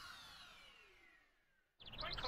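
The last of a cartoon's electronic opening theme dies away: several tones glide downward and fade into near silence. Just before the end a new, louder sound cuts in.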